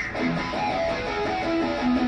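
Electric guitar playing a quick run of single notes through an amp, each note changing pitch every fraction of a second.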